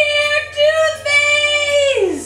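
A high voice sings out one long held note, which breaks briefly about half a second in and falls away at the end.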